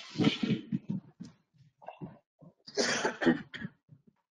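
A person coughing twice: one harsh burst at the start and another near three seconds in.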